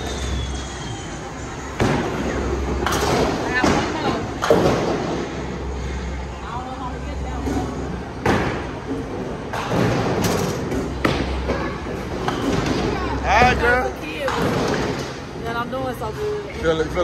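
Bowling alley noise: repeated thuds and knocks of bowling balls and pins, over a low rumble and a background of voices.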